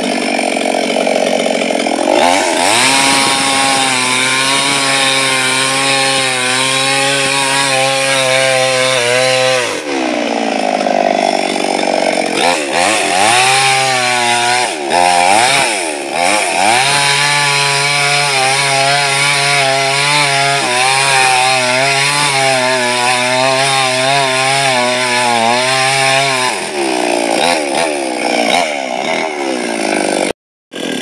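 Two-stroke petrol chainsaw cutting through a dead coconut palm trunk. The engine revs up and holds high under load for several seconds, falls back around ten seconds in, is revved up and down a few times, then cuts again at full revs before dropping back to idle near the end.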